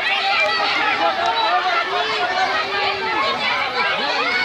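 A crowd of bystanders calling out over one another, many voices at once with no single speaker standing out.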